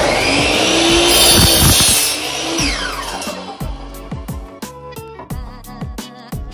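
DeWalt 12-inch miter saw running and cutting through a wooden board, then its motor winding down in a falling whine about two and a half seconds in. Background music with a steady beat plays underneath and carries on after the saw stops.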